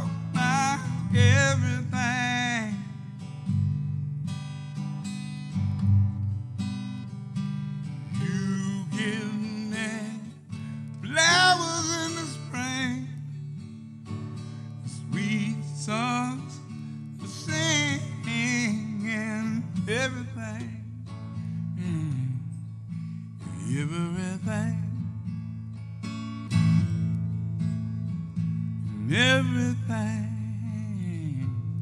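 A man singing with a wavering vibrato on long held notes, in phrases with short breaks, over a steadily strummed acoustic guitar.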